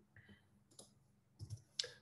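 A few faint, scattered computer keyboard key clicks as lines are added in a code editor.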